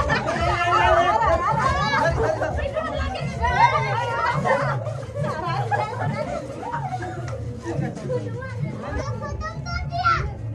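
Excited, overlapping chatter of a family group at play, children's high voices shouting over one another, loudest in the first half.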